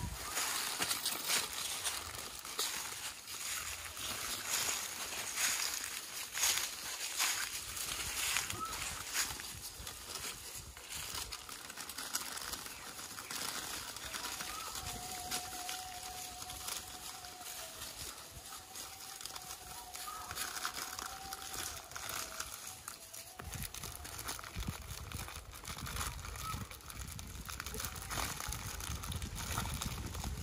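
Irregular rustling and crinkling as food is handled and langurs shuffle over a plastic tarp and dry leaves, with faint voices in the background. A thin wavering tone runs for several seconds near the middle.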